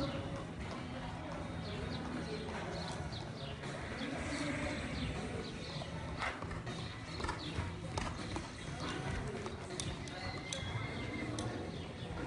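Hoofbeats of several ridden horses on the sand footing of a covered arena: irregular, muffled strikes, with voices in the background.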